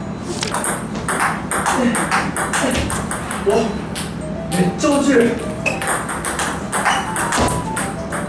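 Table tennis rally: a celluloid-type ping-pong ball clicking repeatedly off the paddles, one of them faced with short-pimpled rubber, and bouncing on the table, with background music running under it.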